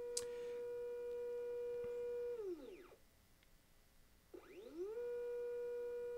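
Edelkrone Action Module motor driving the slider carriage along its belt, a steady whine with overtones. About two and a half seconds in, it falls in pitch as the carriage slows to a stop at the end of its travel. After a pause of about a second and a half, it rises in pitch again as the carriage speeds up in the other direction, looping the slide back and forth.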